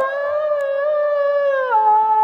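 A young girl singing a Bihu song, holding one long note that steps down in pitch near the end.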